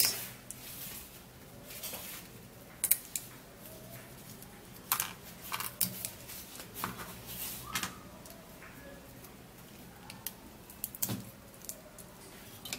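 Dried uda pods (grains of Selim) being snapped into pieces by hand: a few short, crisp snaps and crackles, irregularly spaced.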